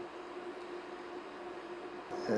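Low, steady room tone: an even hiss with a faint constant hum.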